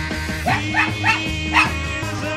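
A poodle gives four short, high yips, each rising in pitch, over a rock song playing in the background.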